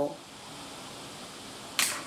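A man's voice trails off at the start, leaving quiet small-room tone, then a brief sharp hiss near the end just before he speaks again.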